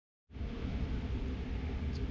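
Steady room tone of a large shop building: a low hum under an even hiss, starting a fraction of a second in.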